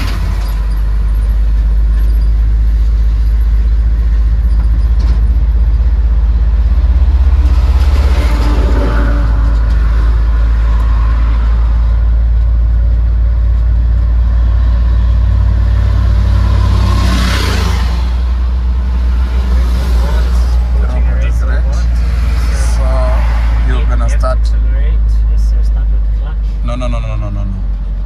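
Cab-over light truck's engine and road noise heard from inside the cab while driving, a deep steady rumble, with two louder swells of noise about eight and seventeen seconds in.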